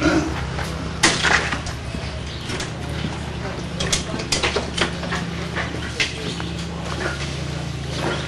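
A steady low engine hum runs underneath people talking in the background, with a few sharp clicks and knocks.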